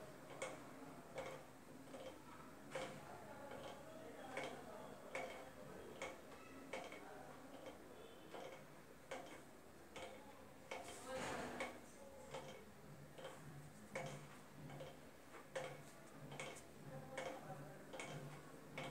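Faint, regular ticking, a little more than one tick a second, over quiet room tone.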